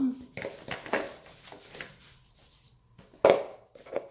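Handling noise of safety earmuffs being fitted over the ears: small knocks and rustles close to the microphone, then one sharp clack about three seconds in as the clear face-shield visor comes down.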